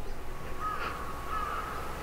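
Crows cawing: a string of short, repeated caws starting about half a second in.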